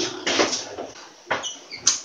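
A few short household noises: a brief rustle, faint high squeaks, then a sharp click near the end.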